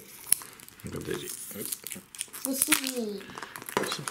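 Crinkling and rustling of a toy surprise ball's plastic wrapper as hands handle it and open its first layer, with one sharp click about a third of a second in.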